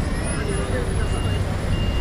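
Short, high electronic beeps, two in the second half, over a steady low traffic rumble, with faint voices in the background.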